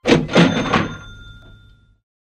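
Edited-in intro sound effect: three quick clattering metallic strikes, then a bright ringing bell tone that fades away over about a second.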